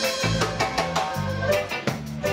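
Live reggae band playing with a steady beat: electric guitars, electric bass, drum kit and keyboard.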